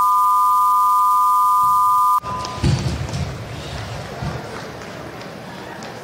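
An electronic end-of-match buzzer sounds as a loud, steady two-note tone and cuts off suddenly about two seconds in. After it comes quieter arena background noise with a few low knocks.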